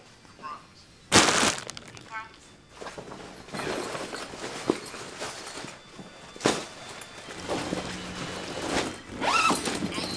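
Handling of a duffel bag and a bag of drugs being passed over: a loud short scrape about a second in, rustling, and a sharp knock in the middle, under faint background music and a brief murmured voice near the end.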